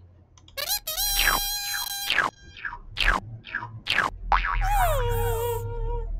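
Code.org Maze puzzle game sound effects: a run of short electronic blips and sliding 'boing' tones as the bee collects nectar and moves forward, ending in a tone that slides down and holds as the puzzle fails because the loop repeats one time too many.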